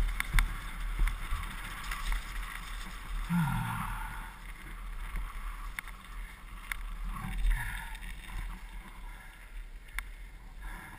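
Morewood Makulu downhill mountain bike rolling fast down a dirt and gravel forest track, heard from a helmet camera: a steady rumble of wind and tyres on loose ground with sharp clicks and knocks of the bike rattling over stones. The knocks are loudest at the start and the whole sound grows quieter as the bike slows.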